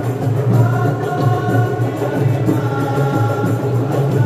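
Marawis ensemble chanting a sholawat together in unison, holding long notes over the low beat of its hand drums.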